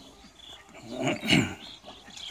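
A single short animal call, about half a second long, a little past the middle.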